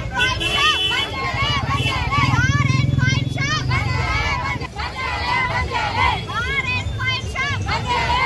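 A crowd of women shouting protest slogans, many raised voices overlapping, over a low engine rumble from a nearby vehicle that swells loudest for a couple of seconds in the middle.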